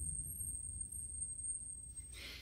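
Quiet room tone with a faint steady high-pitched whine.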